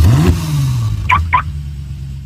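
Car engine sound effect for an intro animation: a sudden start with a quick rev rising in pitch, then a lower engine note falling and settling, with two short high beeps about a second in.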